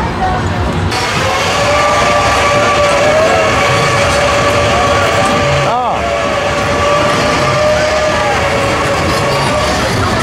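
Carnival thrill ride's machinery running with a steady high whine under a wash of noise, the noise stepping up about a second in as the ride gets going again.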